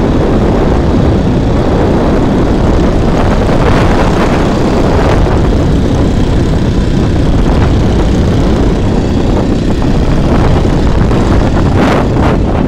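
A motorized bicycle's small engine running steadily at cruising speed, with heavy wind rushing over the microphone.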